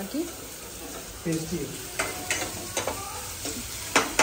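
Chopped onions sizzling as they fry in a pan and are stirred, with a few sharp clicks about halfway through.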